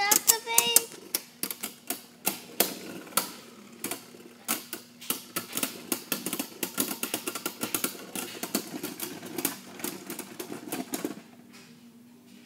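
Two Beyblade Burst spinning tops clashing in a plastic stadium: rapid, irregular sharp clacks of plastic and metal striking, several a second. The clacking stops suddenly about eleven seconds in.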